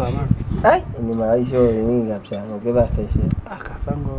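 People talking, over a steady high-pitched buzz of insects that runs without a break.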